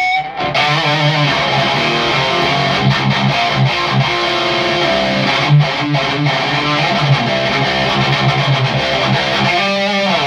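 A Solar electric guitar played through heavy distortion: chugging low riffs mixed with melodic single-note lines. It stops abruptly for a moment just after the start, then plays on.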